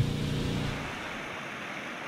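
Small gasoline engine of a portable pump running steadily, fading out within the first second. It gives way to a steady rushing hiss of water pouring from the discharge hose.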